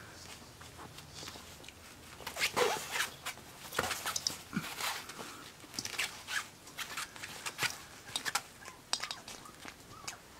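Scratchy rustling and light clicks as a corgi puppy noses, mouths and paws at Christmas baubles on a floor backdrop. The sounds get busier from about two and a half seconds in.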